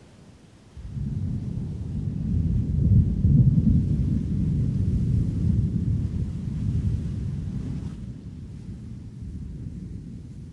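A deep, low rumble that starts suddenly about a second in, swells over the next few seconds, and then slowly dies away.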